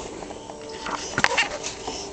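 A toddler's wordless vocal sounds, a few short pitched calls rather than words, with a couple of light knocks about a second in.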